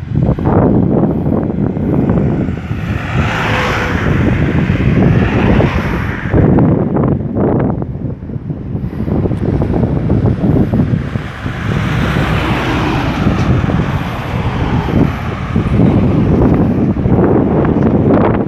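Wind buffeting the microphone, with road traffic: cars passing on the road, two passes swelling and fading, one a few seconds in and another about two-thirds of the way through.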